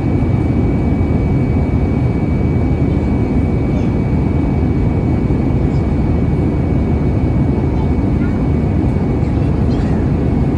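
Airliner cabin noise at a window seat over the wing of an Airbus A321neo in flight: a steady deep rush of airflow and the CFM LEAP-1A turbofan engine, with a thin, steady high-pitched whine on top.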